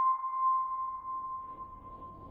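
A single bell-like ringing tone, struck just before and slowly dying away, used as an eerie sound effect over a title card.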